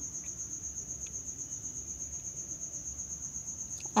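A cricket chirping: a steady, high-pitched trill that pulses several times a second.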